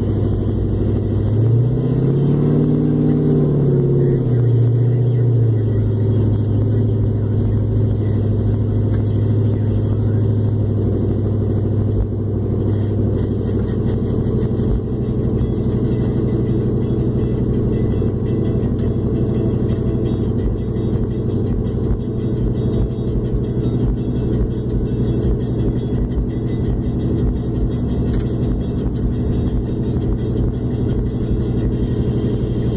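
LS1 V8 of a 1998 Pontiac Trans Am heard from inside the cabin while driving slowly: the revs rise and fall once in the first few seconds, then the engine holds a steady low speed.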